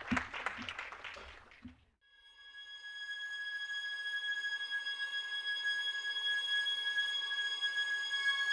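Brief audience applause that fades out within the first two seconds. After a short gap, ambient film-soundtrack music begins: a drone of several steady high tones that swells in gradually.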